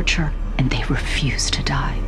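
Horror-film soundtrack: a steady low drone of ominous score under breathy, whispered voices.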